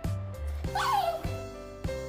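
A small dog gives one short, high yip that falls in pitch, a little under a second in: begging for food. Background music with a steady beat runs underneath.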